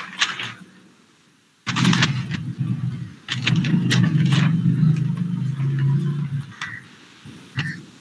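A low rumble, coming in suddenly about two seconds in and lasting about five seconds, with several sharp knocks, picked up by an open microphone on a video call.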